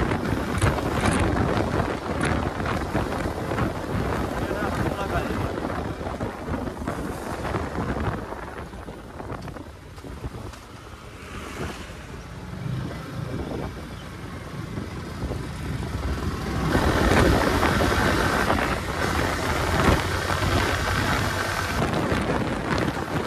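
Wind rushing over the microphone of a rider on a Yamaha R15 V4 motorcycle, with the bike's engine and road noise beneath. It eases off around the middle as the bike slows and builds again from about three-quarters of the way through as it picks up speed.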